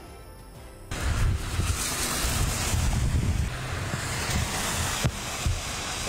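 Heavy rain and gusty wind in a storm, with wind rumbling on the microphone; the sound comes up loud about a second in.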